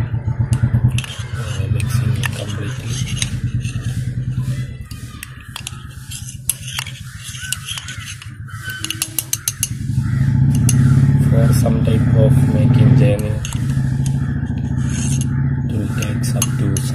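Metal knife blade stirring a mixture in a small glass, with quick light clicks against the glass. Under it, a steady engine hum grows louder about ten seconds in and eases off a few seconds later.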